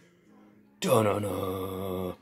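A man's voice chanting one long held note as makeshift intro music. It starts about a second in after near silence and wavers slightly in pitch.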